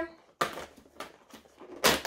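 Fingers picking at and prying open a perforated cardboard door on an advent calendar box: a sharp click about half a second in, a few faint scratches, then a short, louder rip of cardboard near the end.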